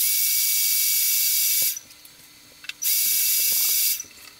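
Handheld hairdryer blowing, a steady high hiss with a faint whine in it. It cuts off abruptly partway through, comes back on about a second later, and cuts off again just before the end.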